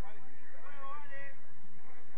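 A person's drawn-out, high-pitched shout, wavering in pitch and lasting about a second, starting about half a second in.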